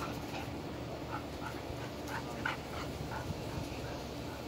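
A young dog making a series of short, high whimpers.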